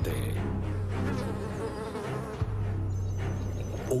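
A fly buzzing, a sound effect laid over a low, steady music drone.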